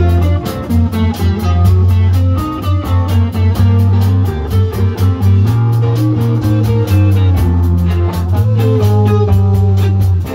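Band music: guitar and bass notes over a steady drum beat, with no singing.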